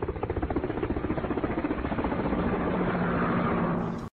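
A machine running with a fast, even pulsing beat and a steady hum, slowly growing louder; the sound is dull, with no high end.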